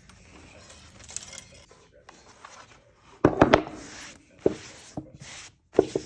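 Old staples being pried out of a wooden footstool frame with a hand tool: scraping and sharp metallic clicks, the loudest cluster a little after three seconds in, then single clicks about once a second.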